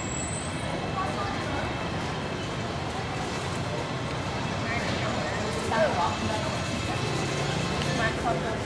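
Steady city street background noise with indistinct voices, which grow briefly louder about six seconds in.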